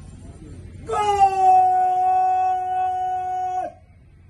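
A bugle sounding one long, steady held note of a ceremonial salute call, starting about a second in and stopping shortly before the end.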